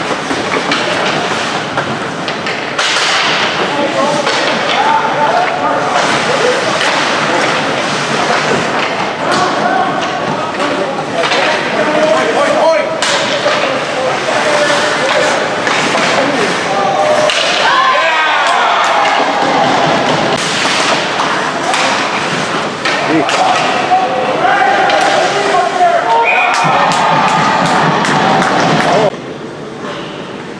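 Ice hockey play: repeated knocks and thuds of pucks, sticks and players against the boards, over many voices calling and shouting from the stands and bench.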